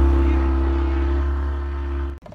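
Motorboat engine running at a steady speed: a loud, constant low hum with a steady drone above it, easing off slightly near the end.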